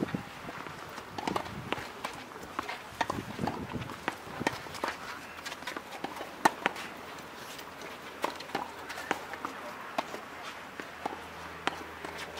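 Tennis rally on a clay court: rackets striking the ball back and forth in sharp separate hits, with footsteps moving on the clay between them.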